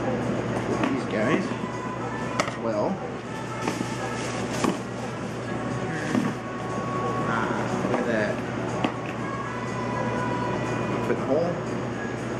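Background music with voices over it, and scattered sharp clicks and knocks of tools and connectors being handled in a toolbox.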